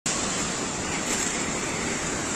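Torrent of an overflowing creek in flood, rushing water making a steady, loud roar.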